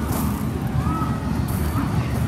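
Fairground din: a steady low rumble with faint voices in the background.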